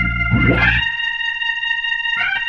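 Gospel organ music: the organ holds a sustained chord, sweeps quickly upward about half a second in, and then its bass notes drop out, leaving the high chord ringing.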